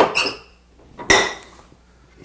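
Two sharp metallic clinks about a second apart, each with a brief ringing, from metal hand tools being picked up and handled.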